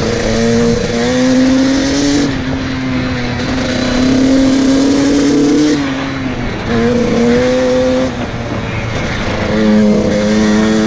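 Dirt bike engine pulling along at speed, its pitch rising and holding, falling off about six seconds in and again just after eight as the throttle is eased or a gear changes, then picking up again near the end. A steady rush of wind runs underneath.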